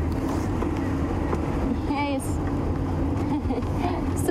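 Engine of an open safari game-drive vehicle running steadily with a low hum as it drives, with a brief voice about halfway through.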